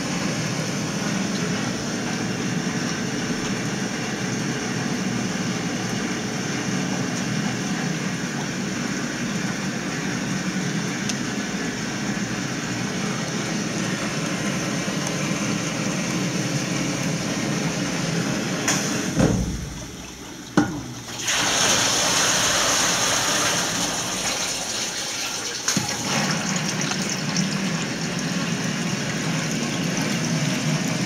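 Water rushing into a wet bench's quick dump rinse (QDR) tank as it fills from the bottom, a steady hiss. About 19 seconds in it dips briefly with a couple of clicks, then comes back as a brighter, louder hiss.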